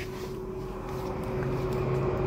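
Steady running hum of a Mercedes E280 heard from inside its cabin, with one constant tone, growing a little louder toward the end.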